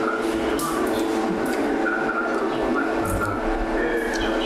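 A steady mechanical hum holding several low tones, with a few short clicks over it as a mouthful of Adana kebab is chewed.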